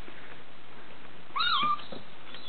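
A six-week-old Bengal kitten gives one short, high meow that rises and then falls in pitch, about a second and a half in.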